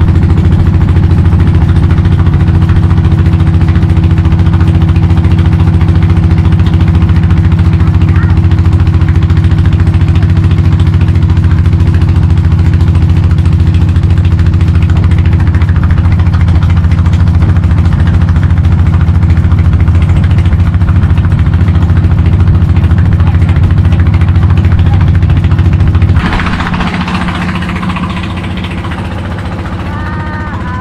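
Small wooden boat's engine running steadily under way, a loud, even drone. About 26 seconds in it turns quieter, with a different note.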